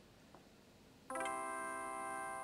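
Apple iMac Pro startup chime as the computer is first powered on: a single sustained chord that sounds about a second in and rings on, slowly fading.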